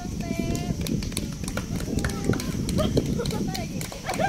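Women's and children's voices talking and calling out, with irregular sharp clicks scattered through from about a second in.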